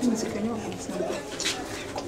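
Quiet, low voices talking, much softer than the shouting around them.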